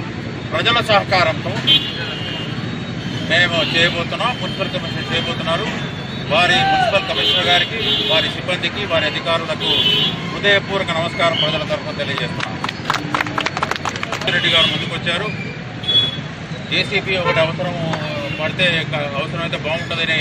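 A man speaking continuously to the press, over steady background traffic noise.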